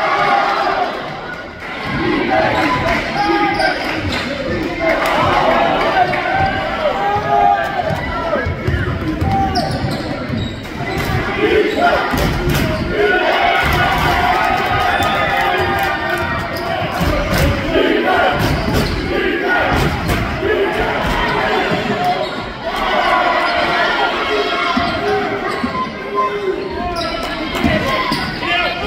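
Basketball dribbled on a hardwood gym floor during live play, repeated sharp bounces over the voices and shouts of a crowd of spectators.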